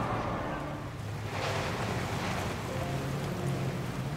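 Steady waterfront ambience of wind and water noise, with a low steady hum beneath.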